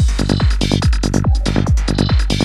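Psytrance track: a steady four-on-the-floor kick drum, about two beats a second, with bass notes between the kicks and hi-hats above.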